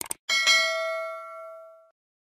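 Two quick mouse-click sound effects, then a notification-bell ding that rings and fades out over about a second and a half.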